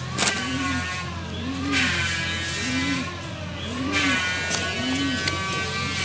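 An engine running, its pitch rising and falling in a regular cycle about once a second over a steady low hum.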